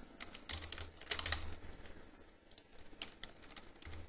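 Computer keyboard typing: short runs of soft keystrokes, with a pause around two seconds in.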